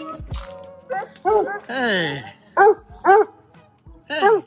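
A hound dog barking: about five barks, each rising and falling in pitch, with one longer, drawn-out falling bark near the middle. A piece of background music dies away in the first moment.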